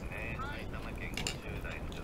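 A man talking quietly, in short phrases, over a steady low background rumble, with one sharp click a little past a second in.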